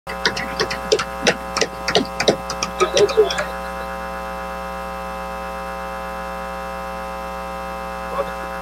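Steady electrical mains hum with a stack of overtones on the audio feed. During the first three or so seconds it carries a run of short, sharp crackles or clicks.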